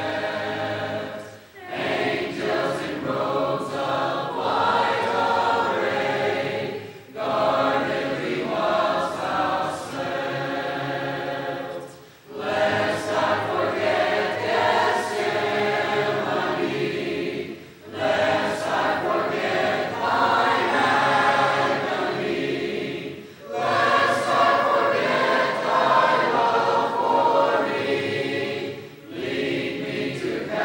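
Choir singing a hymn without instruments, in phrases of about five to six seconds, each ending in a short breath pause.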